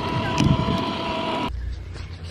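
Wind rumbling on the microphone with a steady high-pitched whine over it, both cutting off abruptly about one and a half seconds in.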